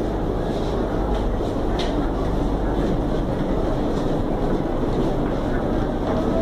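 Steady running and rail noise heard inside the passenger car of a CSR electric multiple unit as it pulls into a station, with a low hum under it.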